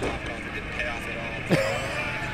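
A man's short laugh about one and a half seconds in, over faint talk and a steady low hum.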